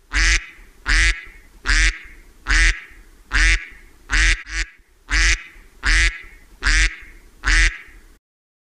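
A duck quacking in a steady run of about ten loud quacks, one a little under every second, with two quacks in quick succession near the middle.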